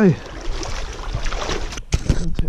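A steady rushing noise with a low rumble and no distinct events; it cuts off abruptly just before the end.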